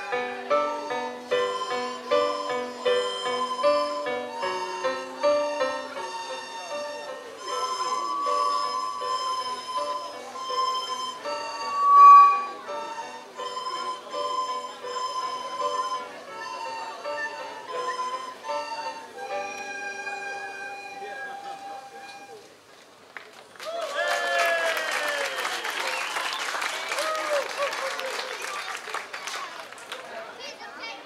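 A children's recorder ensemble playing a simple tune in unison, plain held notes stepping up and down, with one note about twelve seconds in sounding much louder than the rest. The tune ends about three quarters of the way in, and applause follows.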